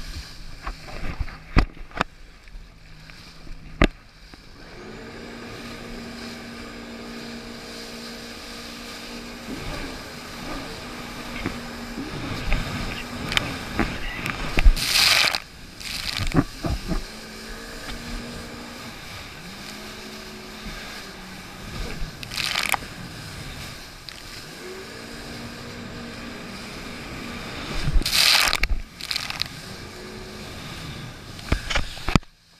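A jet ski's engine running at speed over choppy water, its pitch stepping up and down as the throttle changes, with the hull knocking and slapping on the chop. Three loud rushing bursts of spray and wind break through: one about halfway, one a few seconds later, and one near the end.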